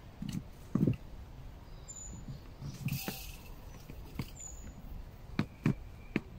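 Cuban yoyo handline being cast and handled: a few scattered faint knocks, with a short hiss about halfway through.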